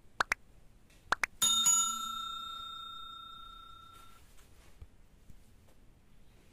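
Sound effect of a YouTube subscribe-button animation: two pairs of quick clicks, then a bright bell ding about a second and a half in that rings down over about two and a half seconds.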